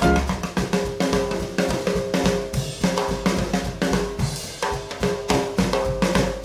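Swing-band music in a drum-kit passage: snare, bass drum and hi-hat played in a quick steady run, with a few held brass-like tones beneath.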